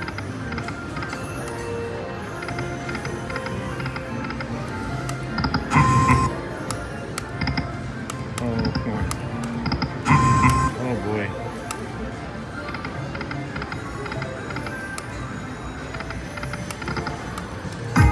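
Video slot machine playing its reel-spin music and jingles over casino background chatter, with two louder bursts of machine sound about six and ten seconds in.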